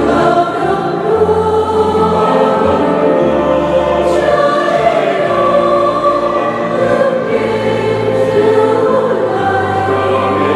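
Mixed choir of women and men singing a Vietnamese Catholic hymn in several parts, accompanied by piano, with low notes held beneath the voices.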